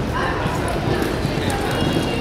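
A horse's hooves loping on soft arena dirt, with indistinct voices talking in the background.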